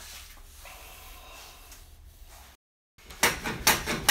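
Low-angle jack plane pushed along a shooting board, trimming end grain: two quick, loud sliding strokes near the end, after a few seconds of faint shop room tone.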